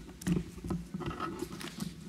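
Papers and a folder being gathered up on a lectern, heard close through the lectern microphone as irregular rustles, taps and scrapes.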